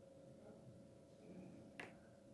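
Near silence with a faint steady hum, broken by a single sharp click near the end.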